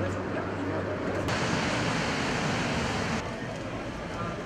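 Subway train running noise: a steady rush that grows louder about a second in and drops back near the end, under the murmur of passengers' voices.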